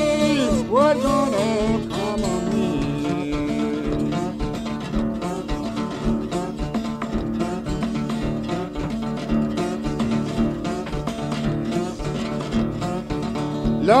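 Delta blues bottleneck slide guitar playing an instrumental passage between sung lines, with notes sliding up and down about a second in, then steady picked notes over a repeating bass.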